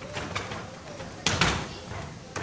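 Karate sparring on a wooden floor with bare feet moving, and one sharp, sudden sound about a second and a quarter in as the fighters close.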